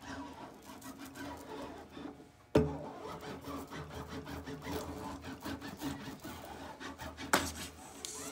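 Hand iron rubbed back and forth along screen mesh on an adhesive-coated aluminium frame rail: a rough, continuous scraping. Two sharp knocks break in, one about two and a half seconds in and a louder one near the end.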